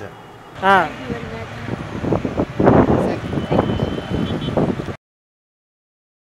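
People's voices talking in a room. The sound cuts off abruptly about five seconds in, leaving dead silence.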